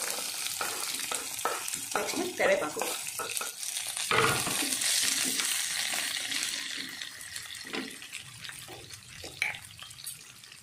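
Chopped onions sizzling as they fry in hot oil in a non-stick pan, stirred with a wooden spatula. A few short knocks come early, the sizzle swells about four seconds in, and it dies down toward the end.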